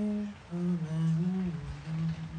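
A man humming a slow tune: a held note, a short break, then a phrase of a few notes stepping up and down, with a lower note near the end.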